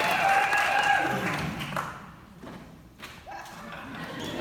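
Audience voices and calls echoing in a large hall, dying down about halfway through, with a single knock just as they fade.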